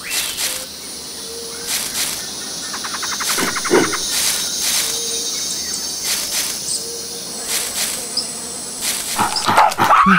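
Jungle ambience: a steady chorus of insects with scattered short animal and bird calls, and a quick rattling call a little past three seconds in.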